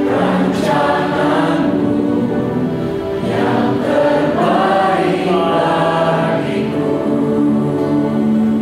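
Worship team and congregation singing an Indonesian-language worship song together, with piano and keyboard accompaniment: sustained, slow phrases of many voices.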